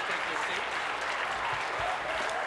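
Legislators giving a standing ovation: steady applause from many hands, with faint voices under it.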